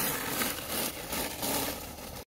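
A KTM SX-E5 electric mini dirt bike riding away on a dirt track, a quiet hiss of motor and tyres that fades as it pulls away.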